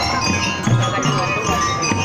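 A marching drum-and-lyre band playing: bright ringing metal-bar notes from bell lyres over steady drumbeats.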